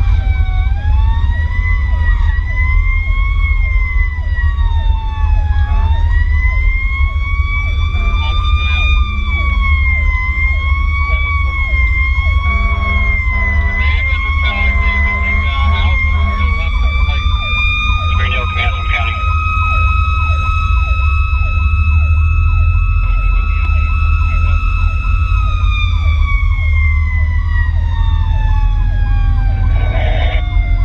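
Fire rescue truck's siren wailing, its pitch rising and wavering up and down, holding high, then winding down over the last few seconds, with a second, faster-repeating siren tone beneath it. A few brief blasts sound around the middle, over the steady rumble of the truck's engine and the road.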